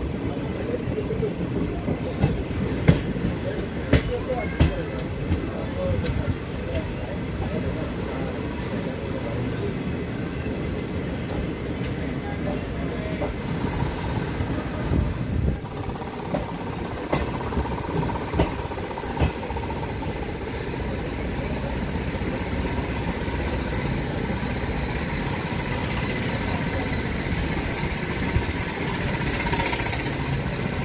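Passenger train running slowly on the rails, a steady wheel rumble with a few sharp clicks over rail joints in the first few seconds and again after the middle, heard from the side of a moving coach.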